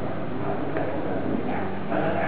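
A muffled voice from a television's speaker.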